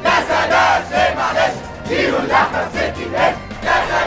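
A crowd of demonstrators chanting slogans together in a steady rhythm, about two shouts a second, with music underneath.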